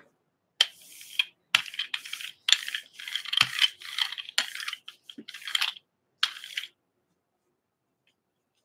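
A rubber brayer rolled back and forth through tacky acrylic paint on a gel printing plate, with a crackling hiss on each pass. There are about a dozen short strokes, and they stop shortly before the end.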